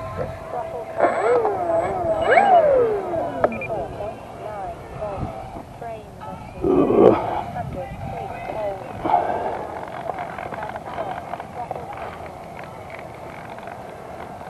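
Voices calling out at a distance with no clear words, their pitch swooping up and down, and a louder, lower call about seven seconds in.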